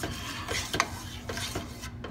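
A spoon stirring thin shrimp étouffée in a stainless steel pot, with short knocks and scrapes against the pot about every half second over a steady hiss.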